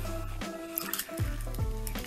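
Thin foil wrapper of a chocolate egg crinkling as it is peeled away by hand, in short irregular crackles, over steady background music.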